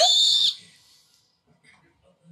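A person's high-pitched excited shriek, rising in pitch and cutting off about half a second in, followed by only faint, scattered sounds.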